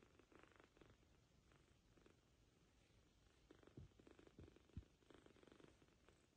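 Kitten purring faintly in spells, with two or three soft low thumps near the middle.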